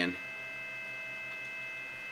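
Steady electrical whine and hum from powered electronics: several fixed high tones over a low hum, unchanging throughout.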